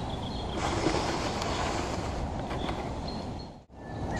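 Outdoor wind noise rumbling on the microphone, with rustling vegetation and a few faint high chirps. The sound drops out abruptly for a moment near the end.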